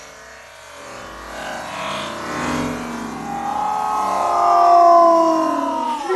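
Slowed-down, pitched-down audio of a mountain-bike crash played in slow motion. Long drawn-out tones slide slowly downward and grow louder toward the end, like a stretched-out yell.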